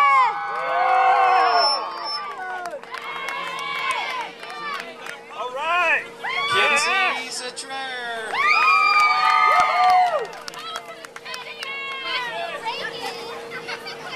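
A group of young girls cheering and whooping, with long shouts that rise and fall in pitch, over scattered clapping. The cheers are loudest near the start and again about eight to ten seconds in, with a faint steady hum underneath.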